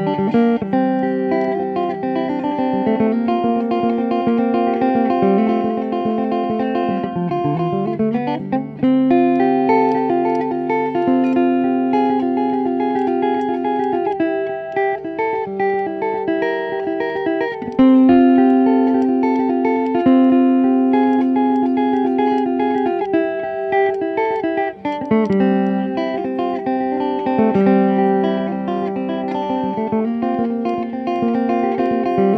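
Gold Tone Dojo-DLX resonator banjo, a banjo neck on a guitar-shaped body with a metal resonator cone, picked in quick bluegrass runs. A note slides up in pitch about seven seconds in. Twice, a low note rings on under the picking for several seconds.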